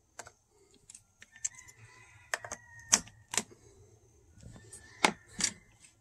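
Handling noise of a 12-volt cigarette-lighter adapter plug and its cord being pushed into a battery pack's 12-volt socket: a string of sharp, irregular plastic clicks and cord rattles, the loudest about halfway through and again near the end.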